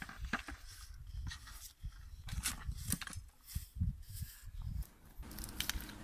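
Knife cutting through a watermelon and fruit being handled: faint, irregular crunches and knocks.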